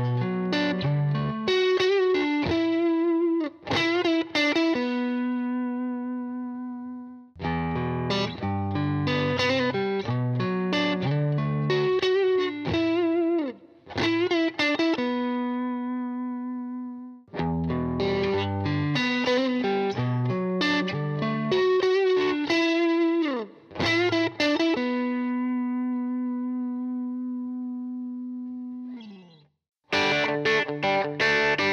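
Overdriven electric guitars playing the same bluesy riff three times in a row, each pass ending on a long held note. The first pass is on a Fender Vintera '50s Modified Telecaster and the second on a Fender American Professional II Telecaster, both on the bridge pickup through a blues-breaker style overdrive into a Fender Deluxe Reverb. Near the end the last held note slides down in pitch and cuts off.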